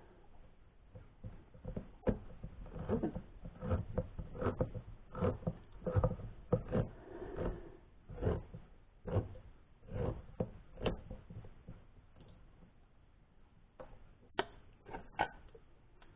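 Hand-cranked can opener working its way around a can of pumpkin: a click or knock about every 0.8 s, which stops about eleven seconds in, with a few lighter clicks near the end.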